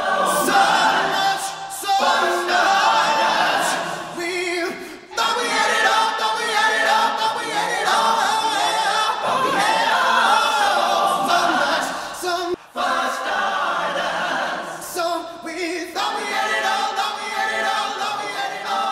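A recorded vocal choir of several voices singing in harmony, with a male lead voice ad-libbing over it: the choir outro of a rock song played back, broken by a few brief pauses.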